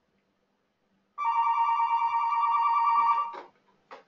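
An electronic telephone ringing once: a warbling two-tone trill that starts about a second in and lasts about two seconds, followed by a short click near the end.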